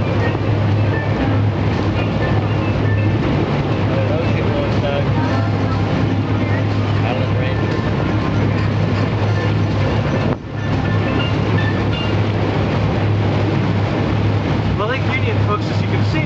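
Amphibious duck tour vehicle running on the water: a steady low engine drone under wind and water noise, dipping briefly about ten seconds in.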